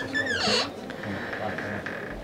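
Motorhome washroom door squeaking as it is swung open: a short, wavering high squeak in the first half second, then a faint steady hum.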